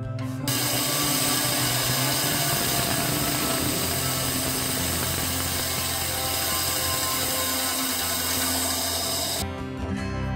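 Band saw running and cutting through a block of amboyna burl wood for a pen blank: a loud, steady noise that starts about half a second in and stops just before the end.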